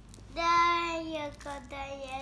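A high-pitched voice held on one steady, sung-out note for about a second, then trailing off with falling pitch.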